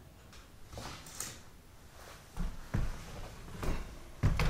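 Wooden-framed canvases on stretchers being shifted in a stack, with a light scrape about a second in and then several dull wooden knocks in the second half as the frames bump together.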